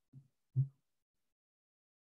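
Two brief, low vocal sounds from a man, like a short hum or murmur, in the first second, then silence.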